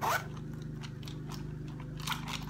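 Zipper of a small pencil pouch being pulled open: a quick zip right at the start, then light scratchy ticks as it opens. A steady lawn mower drone runs underneath.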